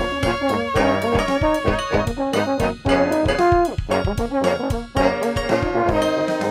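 A brass-band funk tune played by layered saxophones and a sousaphone over a steady drum beat. There are two brief breaks in the playing, one about three seconds in and one near the end.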